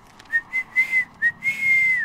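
A person whistling a short phrase: a few quick, clear notes, then a longer held note that slides down at the end.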